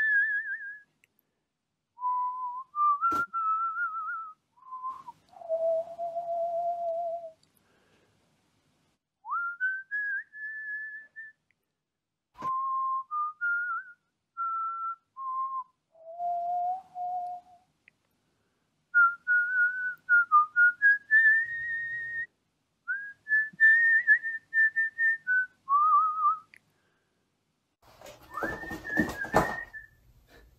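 A person whistling a slow, wandering melody in short phrases, one clear tone gliding between low and high notes with pauses between phrases. There are two sharp clicks in the first half, and a brief noisier, fuller sound comes in under the whistling near the end.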